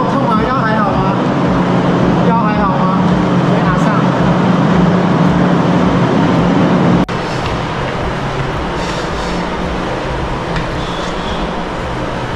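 A steady low mechanical hum with a rumble, with brief voice sounds in the first three seconds. The sound drops abruptly about seven seconds in and stays steady but quieter after that.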